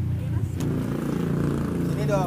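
Steady low engine hum of a running motor vehicle, with faint voices over it.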